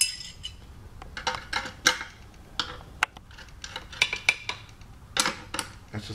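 Steel wrench clinking against the jam nut and spring hardware of a Chromcraft chair's swivel tilt mechanism as the nut on the 3/8 spring bolt is tightened: a string of irregular sharp metallic clicks.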